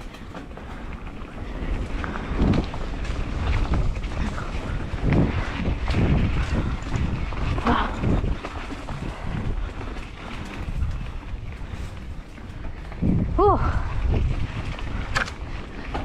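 Mountain bike riding fast down a dirt singletrack: tyres rolling over packed dirt and leaf litter, with frequent knocks and rattles from the bike over bumps and wind rushing over the camera microphone.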